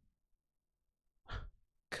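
A man's short breathy sigh after about a second of near silence.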